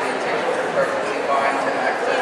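A dog barking over the steady chatter of a crowd.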